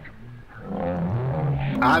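A man's drawn-out vocal cry, low-pitched and held for over a second, starting partway in, as if shouting or groaning at a hard foul on a shot; it runs into the start of speech at the very end.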